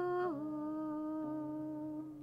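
Slow outro music: a single melody note that slides down shortly after the start and is then held, over a steady low drone.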